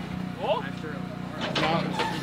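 A small engine running with a steady, even hum, with people's voices over it.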